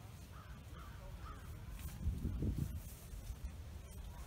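Several short, arched bird calls early on over a steady low outdoor rumble, with a stronger low rumble on the microphone about halfway through.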